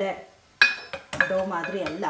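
A stainless steel measuring cup clinking against a glass mixing bowl while scooping flour: one sharp, ringing clink about half a second in, then a couple of lighter knocks.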